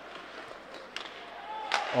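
Faint ice hockey game sounds in a reverberant, empty arena: a few light clicks of sticks and puck over a low steady hiss of skating.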